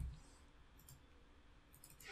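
Near silence with a few faint computer keyboard clicks: one about a second in and a couple more near the end.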